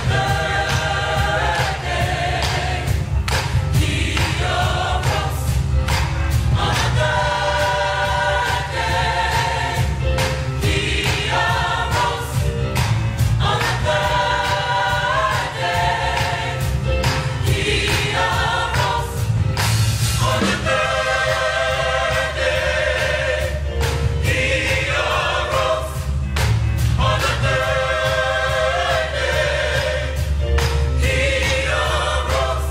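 Gospel choir singing in full voice with band accompaniment: a steady low bass line under the voices and regular percussion beats throughout.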